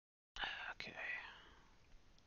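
A man's whispered, breathy voice, starting about a third of a second in and fading away, with one sharp click partway through.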